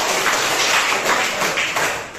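A roomful of schoolchildren clapping their hands, a dense, steady clapping that dies away near the end.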